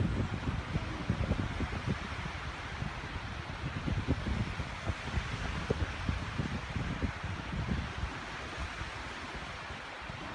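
Wind buffeting the microphone in uneven low gusts over a steady outdoor hiss.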